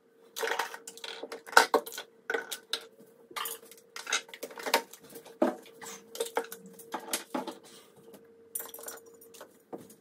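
Toiletry bottles and cosmetic containers clicking and clattering against a bathroom countertop as they are picked up and set down, in many sharp, irregular knocks. A faint steady hum runs underneath and stops near the end.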